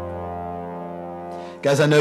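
A live band's last chord held and ringing out, a steady low bass note under it, slowly fading; a man's voice cuts in about one and a half seconds in.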